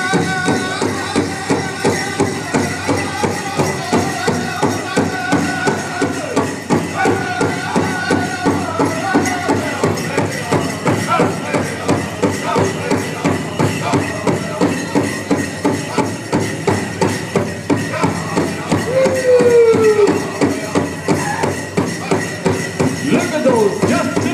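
Powwow drum group singing over a steady, even drum beat, with high voices carrying falling phrases.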